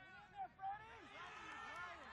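Rugby players and sideline spectators shouting: overlapping distant calls, with two short, loud shouts about half a second in.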